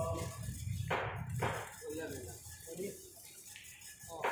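Indistinct voices talking over background music, which fades out in the first couple of seconds.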